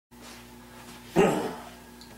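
A single short dog bark about a second in, over a faint steady electrical hum.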